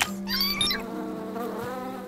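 Cartoon sound effect of bees buzzing: a steady low hum of many flapping wings, the bees fanning the honey to thicken it. A short rising swoop sounds about half a second in.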